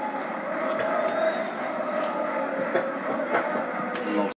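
A televised football match playing in the room: a steady stadium crowd murmur with a few faint clicks.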